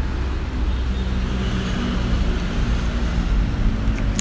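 An engine idling steadily: a continuous low drone that holds the same pitch and level throughout.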